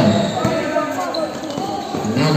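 A basketball being dribbled on a concrete court, with players' and spectators' voices over it.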